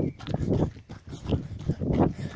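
Heavy, quick panting breaths of an exhausted runner, close to the phone's microphone.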